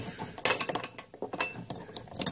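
Small metal clicks and clinks of a padlock being fitted onto a steel lockout hasp: a cluster of clicks about half a second in, then a few scattered ones.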